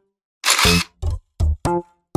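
Edited-in sound effects: a short burst of noise about half a second in, followed by a quick run of short, separate pitched notes with clean silence between them.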